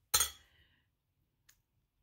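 A sterling silver coil bracelet set down on the metal platform of a small digital scale: one bright metallic clink that rings briefly, then a faint tick about a second and a half in.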